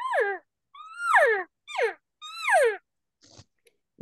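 Four elk mews blown on a diaphragm reed, each call sliding down in pitch; the third is short. A faint breath follows about three seconds in.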